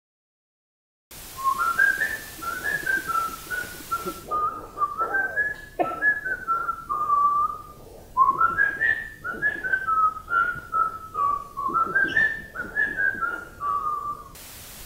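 A person whistling a tune: a single clear line of notes stepping up and down in short phrases, beginning about a second in.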